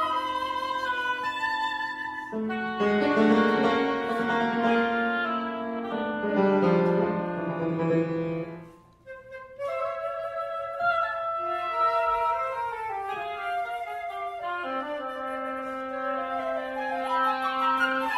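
Contemporary classical chamber quartet of flute, oboe, electric guitar and piano playing sustained woodwind lines over piano chords. The music breaks off briefly about halfway through, then resumes with long held notes.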